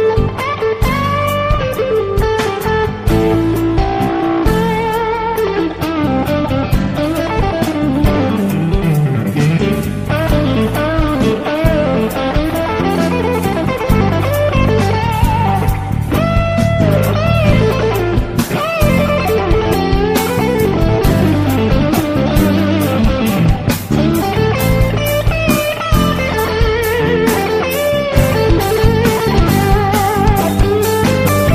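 Instrumental background music led by an electric guitar with bending, wavering melody lines over a steady bass line and a regular beat, in a blues-rock style.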